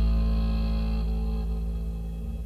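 Distorted bass guitar chord left ringing at the end of a hardcore punk song, slowly fading out with a buzzing hum and no drums.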